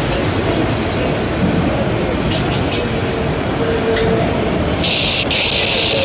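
Autorack freight cars rolling past close by: a steady loud rumble of steel wheels on rail with a faint on-and-off whine of wheel squeal. A few clacks sound midway, and a high hiss joins about five seconds in.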